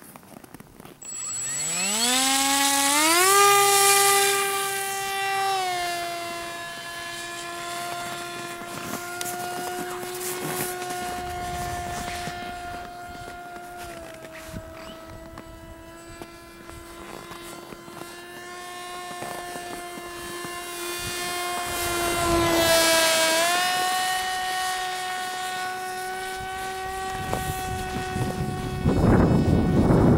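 A small electric RC airplane's motor and propeller whine spooling up to full throttle for the takeoff from snow, rising steeply in pitch over about two seconds. It then runs at a near-steady high pitch as the plane climbs and flies, easing slightly lower and later rising again. A burst of rushing noise near the end.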